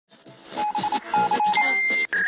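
Electronic signal sounds: a harsh noisy hiss broken by short repeated beeps at one pitch, then a steady high tone that starts about one and a half seconds in.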